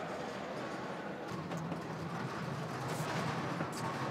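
Background murmur of voices with a few light knocks and clicks scattered through it.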